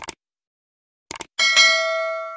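Subscribe-button sound effect: short mouse clicks, then a notification-bell chime about one and a half seconds in that rings on and fades.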